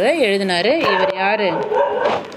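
A voice drawing out a wordless sung vowel, its pitch swelling up and back down twice before levelling off.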